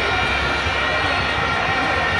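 Football stadium crowd noise from packed stands: a loud, continuous din with several steady held tones above it.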